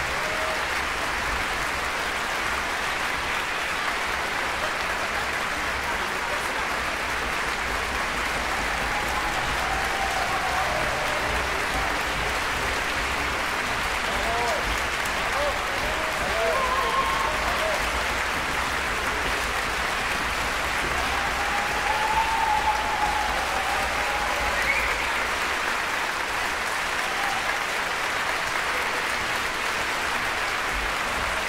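Concert-hall audience applauding steadily after a violin concerto, with a few voices calling out from the crowd between about ten and twenty-five seconds in.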